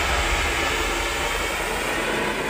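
Anar (flowerpot fountain firework) burning and spraying sparks, a steady rushing hiss.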